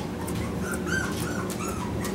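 Young Australian Shepherd puppy whimpering in several short, faint, high squeaks.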